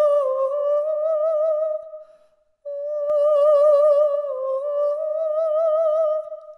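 A singing voice holding one long high note with vibrato. The note breaks off about two seconds in, and after a short pause the same long note comes back, dipping slightly in pitch before rising again.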